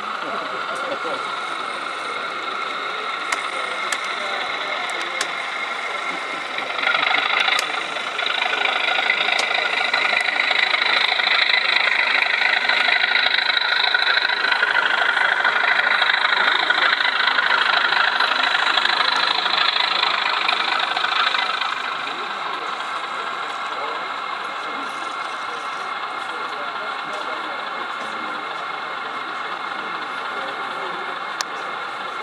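Sound-fitted model Class 37 diesel locomotive, its English Electric engine sound played through a small onboard speaker, running steadily. It gets louder about seven seconds in, with a harder working note for about fifteen seconds, then drops back to a steady idle.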